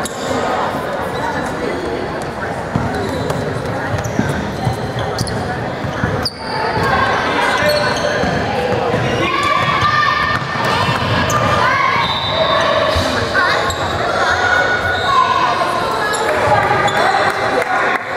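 Basketball bouncing on a hardwood gym floor, with voices calling out and echoing in the large hall.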